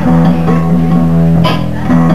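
Live band playing loudly: electric guitar over a repeating low riff, with a sharp hit about one and a half seconds in.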